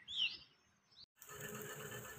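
A small bird chirps a few times, short and faint, in the first second. After a brief silence a steady faint hiss follows.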